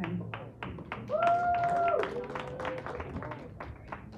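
Hand clapping from a congregation, quick and irregular. A voice holds one long note about a second in, then a lower, shorter one.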